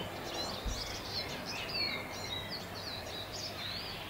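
Garden birdsong: a run of short, high chirps and whistling phrases, some gliding up or down, over a steady low background hum.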